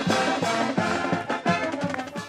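Brass band music playing, full chords of trumpets and trombones over a steady beat.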